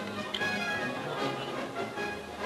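Orchestral background music with strings, holding sustained notes.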